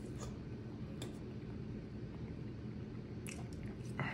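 A person chewing a mouthful of raw ground beef, with soft wet squishing and a few faint clicks.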